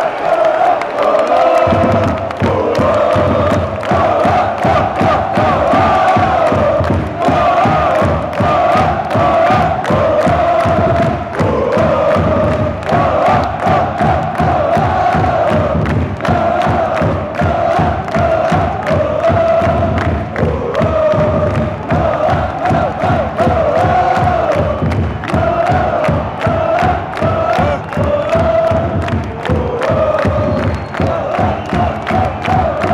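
Football supporters chanting loudly in unison in a stadium stand, with a drum joining about two seconds in and beating steadily under the chant.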